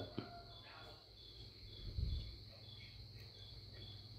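Faint insect chirping, cricket-like short high pulses about twice a second, with a low thump about halfway through.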